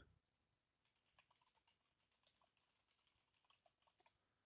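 Faint typing on a computer keyboard: a quick, irregular run of key clicks that starts about a second in.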